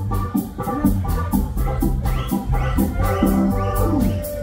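Live ska band playing an instrumental passage: drums, bass, guitar and keyboard chords over a steady beat of about four strokes a second.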